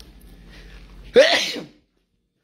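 A person sneezing once, loudly, about a second in: a short voiced onset that breaks into a sharp burst of breath.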